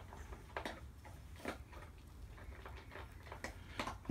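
Faint, irregular light clicks and ticks from fingers handling and turning a hard cast polystyrene disc, over a low steady room hum.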